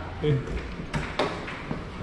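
Two sharp clicks a quarter-second apart, about a second in, then a lighter one: a room door's lock and latch being worked as the door is unlocked and pushed open.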